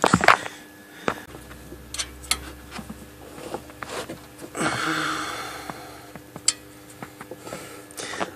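Scattered light clicks and metallic taps of hand tools and parts being handled at a car's wheel hub. A louder rustle of movement lasts about a second and a half midway.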